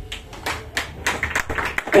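Scattered, uneven hand clapping from a small audience as a live rock song finishes.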